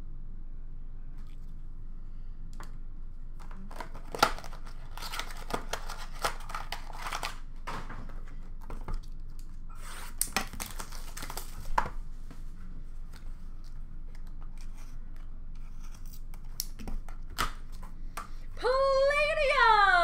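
Card packaging being torn open and rustled by hand, in bursts of tearing and crinkling with sharp clicks. A voice breaks in near the end.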